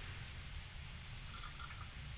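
Quiet room tone: a steady low rumble under a faint even hiss, with a brief faint tone about one and a half seconds in.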